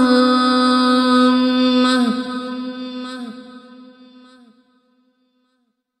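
A voice chanting an Arabic supplication holds one long, steady final note. The note breaks off about two seconds in and fades away in an echoing tail over the next few seconds, leaving silence.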